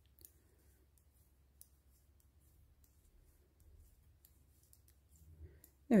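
Metal knitting needles clicking faintly and irregularly as stitches are knitted off one needle onto the other.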